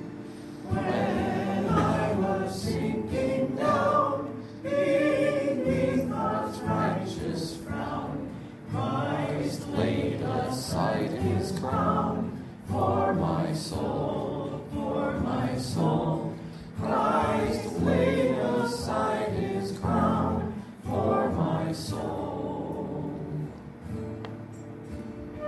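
A group of voices singing a hymn together, line by line, with brief dips between lines about every four seconds.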